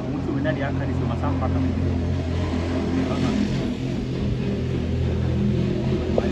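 A steady low mechanical hum, like an engine running, with faint voices over it.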